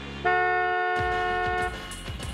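A car horn sounding one long honk of about a second and a half over a low sustained tone; about a second in, music with a steady drum beat starts.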